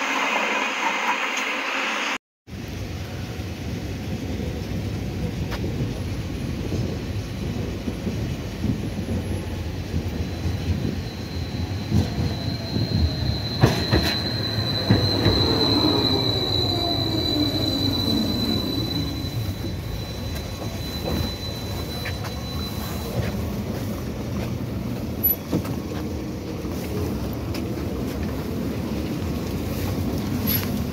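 Belkommunmash BKM 802E tram running on its rails: a steady rumble of wheels and running gear. A thin high wheel squeal holds through the middle, and a whine falls in pitch for a few seconds as the tram slows. The sound cuts out briefly about two seconds in.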